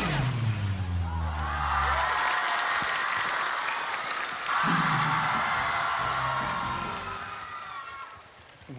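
Stage music ends with a falling pitch sweep, then a studio audience cheers, screams and applauds, dying down toward the end.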